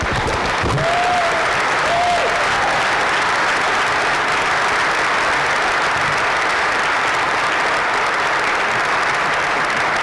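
Audience applauding steadily in a large hall, with two short rising-and-falling calls from the crowd about one and two seconds in.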